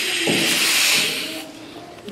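Compressed air hissing from a blow gun pressed into a port of a BMW diesel engine's oil-to-coolant heat exchanger, pressure-testing it for an internal leak; the hiss fades out about one and a half seconds in.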